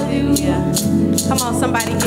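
Live gospel praise music: several voices singing over held instrumental chords and a steady drum beat.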